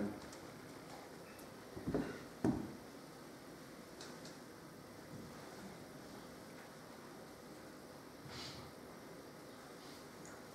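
Quiet room tone broken by two light knocks about two seconds in, half a second apart, from handling a paint palette and brush. A few faint ticks and a soft swish follow.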